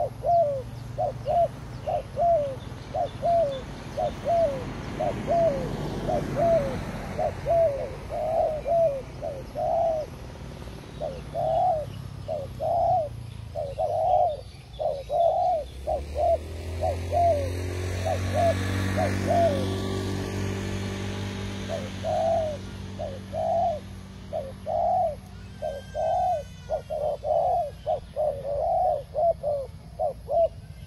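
Spotted doves cooing in a fast, continuous series of short coos, about two to three a second, louder in the middle and near the end. A low engine hum swells in from about halfway through and fades again a few seconds later.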